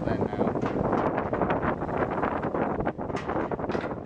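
Wind buffeting the microphone over the rush of sea water along the hull of a sailing ship under way. It is a loud, steady rush that eases a little about three seconds in.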